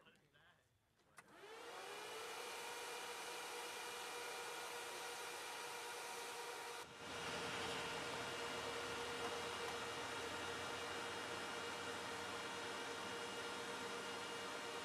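A motor-driven blower switches on with a click about a second in, spins up within half a second and then runs steadily with a whine over a rushing hiss. It dips briefly near the middle and comes back a little louder.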